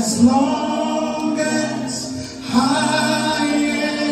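A group of voices singing a slow, choir-like song in long held notes, with a new sung phrase beginning about two and a half seconds in.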